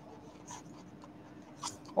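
A pen writing on paper: faint scratching strokes as a short word is written out.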